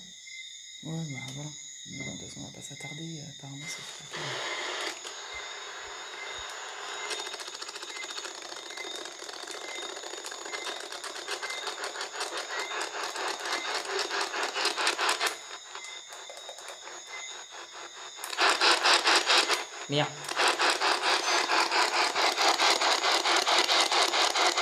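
P-SB11 spirit box radio sweeping the AM band: radio static chopped into rapid pulses as it jumps from station to station. It drops quieter for a couple of seconds past the middle, then comes back louder near the end.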